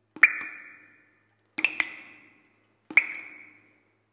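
Intro sound effect of bright, water-drop-like plinks: four sharp strikes, each ringing and fading away over about a second. The first comes just after the start, a close pair follows about a second and a half in, and the last comes about three seconds in.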